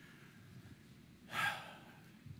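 A man's single short, audible breath close to the microphone about one and a half seconds in, over faint room tone.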